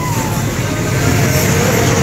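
A motor vehicle engine running close by, a steady low rumble.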